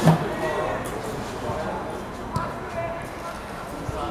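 A football kicked with a dull thump right at the start, with lighter knocks of the ball later on, over players' calls and shouts across the pitch.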